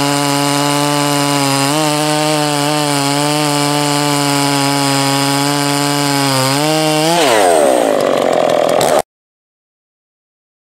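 Two-stroke chainsaw cutting through a log at full throttle, a steady high engine note that wavers slightly under load. About seven seconds in the engine note drops sharply, and the sound cuts off suddenly about two seconds later.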